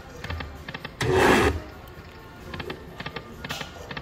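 Aristocrat Lightning Link poker machine playing out a spin: a run of quick clicks and short electronic tones as the reels spin and stop. About a second in there is a brief loud whoosh of noise, the loudest sound.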